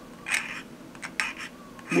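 X-Acto knife with a #10 blade scraping the moulded seam line off a clear plastic aircraft canopy, a few short scraping strokes.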